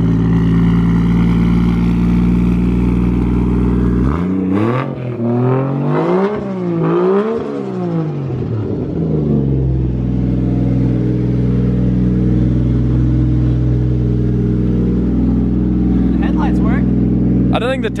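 Nissan S13 drift car's 1JZ straight-six engine idling, then revved in a few quick rising and falling blips about four seconds in, before settling back to a steady idle.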